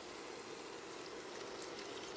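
Faint, steady sizzle of a sofrito with pork cracklings frying in lard in a pot.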